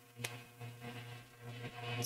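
A pause between spoken sentences: faint room tone with a steady low hum and a small tick about a quarter second in.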